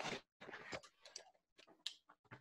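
Felt-tip marker strokes on a whiteboard: a string of short, irregular squeaks and taps as letters are crossed out.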